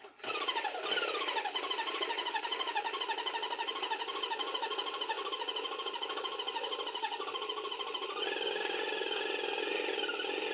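Graco Magnum X7 airless sprayer's electric pump motor running under load, pushing paint out through the line and gun. Its whine drops in pitch as it starts, then wavers up and down about twice a second, and steps up in pitch about eight seconds in.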